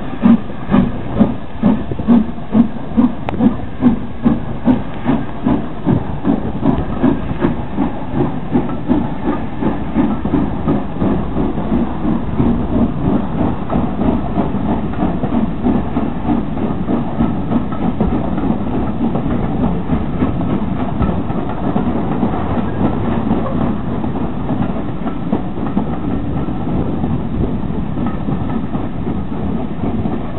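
Steam locomotive pulling away with a train of coaches, its exhaust beating loudly about three times a second, with steam hissing. The beats quicken and grow fainter, blending into a steady rumble of the train rolling along the track as it draws away.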